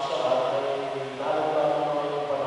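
Liturgical chant sung in sustained notes, with a brief break about a second in.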